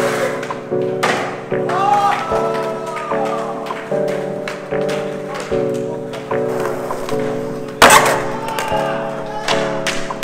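Background music: a repeating chord pattern, roughly one chord every three-quarters of a second. About eight seconds in, a loud, sharp crash cuts through it: a skateboarder slamming onto concrete.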